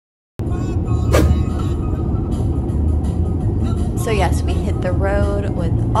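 Road noise inside a moving car: a loud, steady low rumble that starts suddenly about half a second in.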